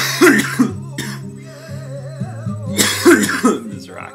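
A man coughs in two short bouts, one at the start and one about three seconds in, over acoustic flamenco guitar music playing in the background.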